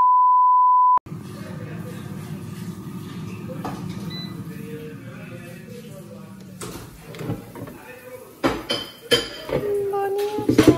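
A steady beep tone lasting about a second. Then a Cosori air fryer's fan runs with a low hum that drops in pitch as it slows, and clicks and clunks follow as the plastic basket is pulled out.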